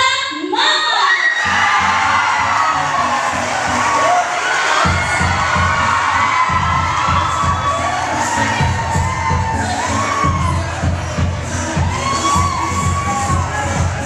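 Audience in a large hall cheering, whooping and shouting. Music with a heavy beat comes in underneath and grows stronger about five seconds in.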